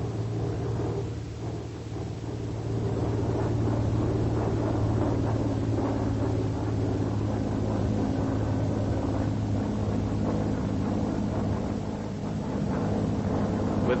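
Vought F4U Corsair's radial engine droning steadily in flight, a deep even hum that grows slightly louder about three seconds in.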